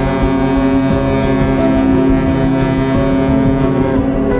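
Cruise ship's horn sounding one long, deep blast that cuts off near the end.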